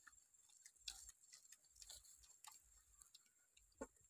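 Two puppies eating pieces of cooked duck egg: faint, irregular clicks and smacks of chewing and licking, the loudest near the end.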